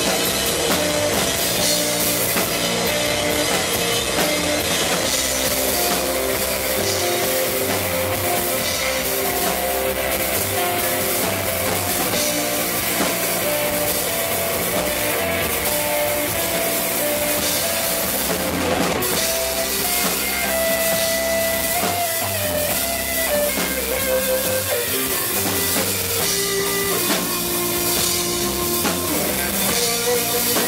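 Live rock band playing an instrumental passage: drum kit, electric bass and electric guitar together, loud and steady, the guitar holding a sustained melodic line over the beat.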